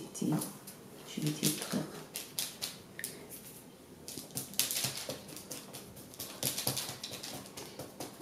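Hands pressing risen dough balls flat on a floured, parchment-lined baking tray: soft crinkling and tapping of the parchment paper, thickest in the second half.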